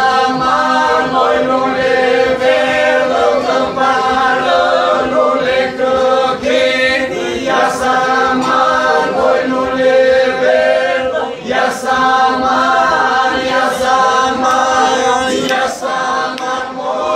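Albanian folk group, men with a woman among them, singing unaccompanied polyphony in several parts over a steady held drone (the iso). A few sharp knocks sound now and then under the singing.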